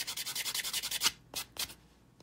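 Nail buffer block rubbing rapidly back and forth on a dip-powder fingernail, a fast rasping stroke rhythm, to smooth the nail's surface. The strokes stop a little past halfway, with two last single strokes.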